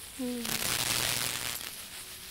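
A person's short voiced sound, then about a second of breathy, hissing laughter close to the microphone.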